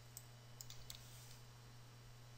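Near silence over a low steady hum, with a few faint clicks of a computer mouse in the first second or so.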